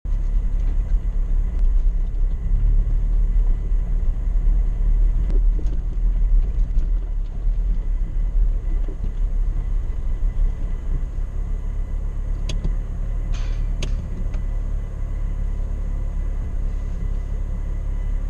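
Low, steady rumble of a Suzuki 4x4 driving slowly over a rough, wet stony track, heard from inside the cab, with a few short sharp knocks or rattles about two-thirds of the way through.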